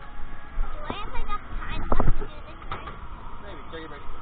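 Indistinct voices with a few sharp knocks, the loudest pair about two seconds in.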